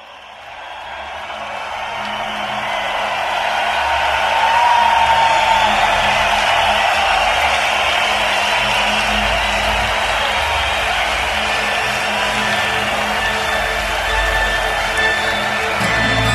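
Opening of a live rock concert recording: a large crowd cheering over a low, droning instrumental intro with no vocals, fading in over the first few seconds and holding steady after that.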